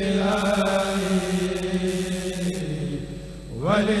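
A kurel, a group of men, chanting a khassida (Sufi Arabic devotional poem) together in one long melodic line of drawn-out held notes. The voices fade briefly a little after three seconds in, then sweep upward in pitch into the next line.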